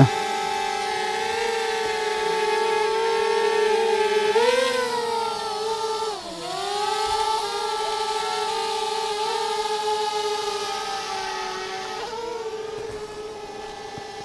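DJI Mavic quadcopter's propellers giving a steady whining hum as it hovers and climbs. The pitch swings up briefly about four seconds in and dips a couple of seconds later, then the hum grows a little fainter near the end as the drone moves away.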